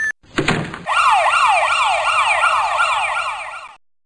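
Police siren in a fast yelp, its pitch sweeping up and down about three times a second, after a short blast about half a second in; it fades out near the end.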